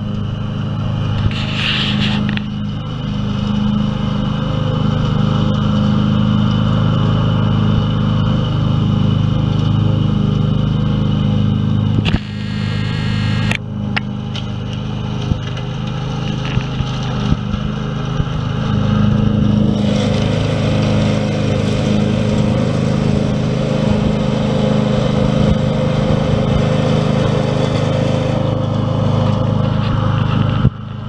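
Ride-on lawn mower's engine running steadily while it mows grass, growing louder as the mower comes closer, with a brief dip about twelve seconds in.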